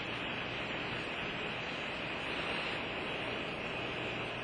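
Steady background hiss with no distinct sounds in it: room tone and recording noise.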